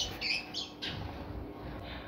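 A small bird chirping indoors, a few quick high calls in the first second. The bird is nesting in the room's false ceiling.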